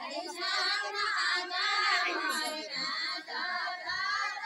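A group of women singing a Nepali deuda song together, unaccompanied. The voices come in at the start and swell to full strength within the first second.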